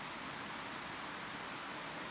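Steady, faint background hiss of outdoor ambience, with no distinct sound standing out.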